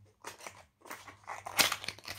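Thin cardboard perfume box being opened by hand: a few short scrapes and rubs of the card, the loudest a little before the end.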